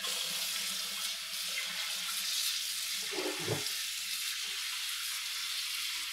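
Kitchen sink tap turned on suddenly and running steadily at full flow. There is a brief lower-pitched sound about halfway through.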